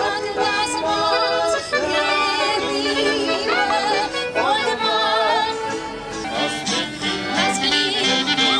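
Small acoustic band playing old Berlin popular music of the 1910s and 20s: a violin melody with vibrato over accordion and acoustic guitar.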